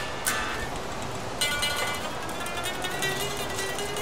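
Mexican-made Fender Telecaster electric guitar being played: a short note just after the start, then a chord about a second and a half in that rings on. The strings ring clean with no fret buzz after the setup.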